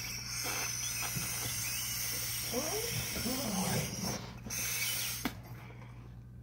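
Breaths blown by mouth into a clear latex confetti balloon, inflating it, with a short wavering squeak near the middle and a small click shortly before the end.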